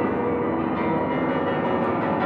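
Grand piano played in a dense, unbroken mass of many notes sounding at once, held at a steady loudness.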